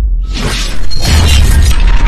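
Logo-intro sound effects over music: a brief cut-out, a rising whoosh, then about three-quarters of a second in a sudden loud crash with a deep rumble that carries on.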